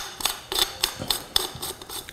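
A quick, irregular run of light clicks from a cutting shoe being screwed onto the end of an aluminium sediment-sampler tube, its thread clicking as it turns.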